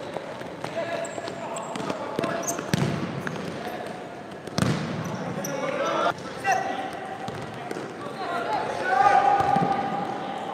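Futsal ball kicked and bouncing on a sports-hall floor, with players and spectators calling out, all echoing in the hall. A sharp, loud kick comes about halfway through.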